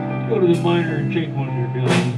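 Live blues band playing: electric guitar, keyboard, bass and drums, with two sharp hits about half a second in and near the end.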